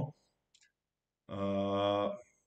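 A man's voice holding one steady, level-pitched hum or drawn-out vowel for about a second, coming in after a second of quiet: a hesitation filler between phrases of speech.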